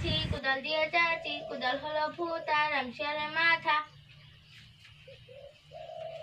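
A high voice singing a wavering tune for about three and a half seconds, then stopping; a short held note comes near the end.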